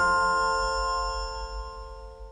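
The closing chord of a TV programme's jingle: several held notes ringing on and slowly fading out.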